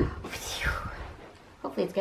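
A blanket swung through the air close to the microphone: one swishing whoosh that falls in pitch over most of a second, with a soft low thump as it starts. A woman's voice comes in near the end.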